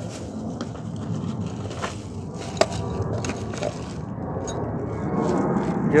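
Hands rummaging through a plastic toolbox: plastic bags rustling and tools and parts clicking and knocking, with a few sharp clicks.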